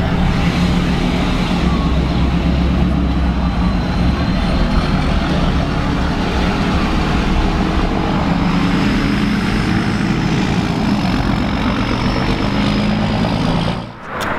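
Lifted diesel pickup trucks driving off slowly, heard from inside a following vehicle: a steady low engine rumble with a faint high whine over it.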